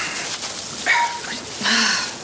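A man sniffling and blowing his nose into a handkerchief, in three short noisy bursts, the longest near the end.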